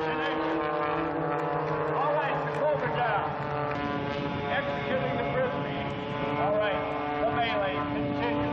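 Propeller engines of aerobatic planes droning steadily overhead, several held pitches that shift slightly as the planes manoeuvre, with people's voices over it.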